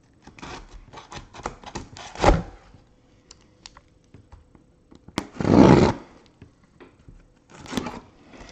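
Cardboard shipping case being cut open: a run of taps and scrapes on the cardboard, then a loud slicing rip of a blade through the packing tape along the seam about five seconds in, and a shorter one near the end.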